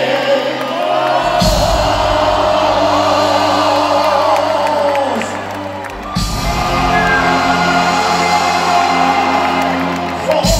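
Live Persian pop band playing, heard from the audience in a large hall. A held, gliding vocal line runs over it, the full band with bass and drums comes in about a second in, drops back briefly just before the middle, then returns, with crowd whoops and cheers throughout.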